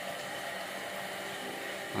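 Steady ambient background noise: an even hiss with a faint hum and no distinct events.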